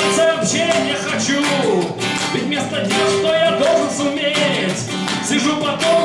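A man singing a bard song to his own acoustic guitar accompaniment.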